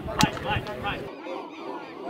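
Boys' voices and shouts from a celebrating youth football team, with one sharp clap or slap a moment in.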